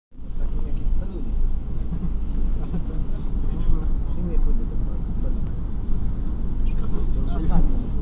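City bus heard from inside the cabin while driving: a steady low engine and road rumble, with indistinct voices over it.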